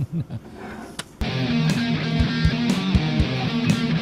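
A radio host's brief laugh, then a rock track on the radio starts abruptly about a second in, with electric guitar and a steady drum beat.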